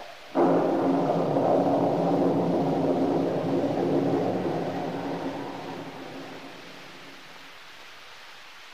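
Radio-drama thunder sound effect: a sudden crash just under half a second in, rumbling on and slowly fading away over about six seconds.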